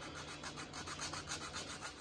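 Coarse 60-grit sandpaper worked by hand over hardened crack filler on a 1968 Pontiac Firebird steering-wheel spoke, rasping in quick, even back-and-forth strokes as the high spots are knocked down. Soft.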